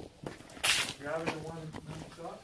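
Quiet, muffled male voice murmuring, with a short hiss or rustle a little over half a second in.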